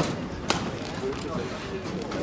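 Two sharp shuttlecock strikes from badminton rackets, about half a second apart, during a rally.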